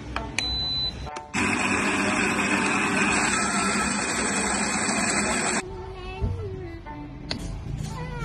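The built-in coffee grinder of a Donlim espresso machine grinding beans into the portafilter: a loud steady grinding noise that starts about a second in and cuts off suddenly after about four seconds, a timed dose.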